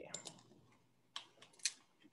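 A few faint computer keyboard clicks, one about a second in and a couple more about half a second later, with near silence between them.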